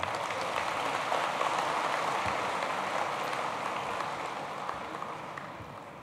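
A large indoor audience applauding, a dense clapping that slowly dies away over the last few seconds.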